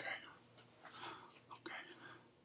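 A man whispering quietly in a few short breathy bursts close to the microphone.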